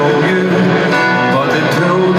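Live acoustic guitar strumming with singing: a folk song performed in concert.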